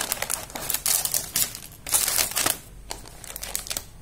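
Clear plastic packaging bags crinkling as they are handled, in dense crackling bursts for about two and a half seconds, then a few lighter crackles that die away.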